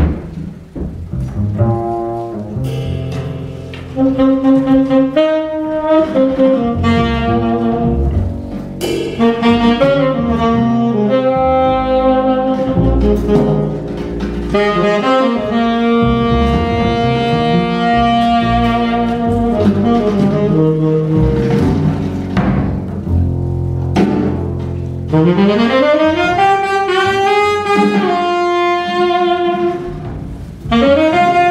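Jazz trio playing live: saxophone carrying the melody over plucked acoustic double bass and a drum kit with cymbals. Near the end the saxophone slides upward through several long phrases.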